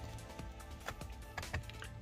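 Quiet background music, with a few faint light clicks.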